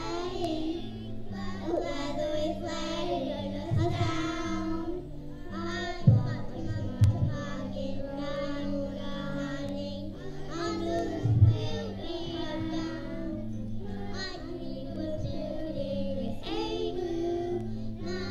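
A group of young children singing together over instrumental accompaniment with a steady, stepping bass line. A few low thumps stand out about 4, 6, 7 and 11 seconds in.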